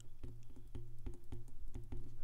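Stylus tip tapping and ticking on an iPad's glass screen while writing by hand: quick irregular clicks, several a second, over a low steady hum.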